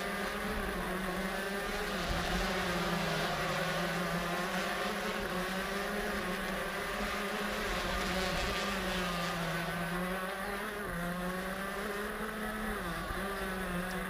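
Shifter kart's Honda CR125 two-stroke engine heard on board at racing speed. Its high buzzing note holds steady, then dips in pitch twice in the second half as the driver comes off the throttle into corners.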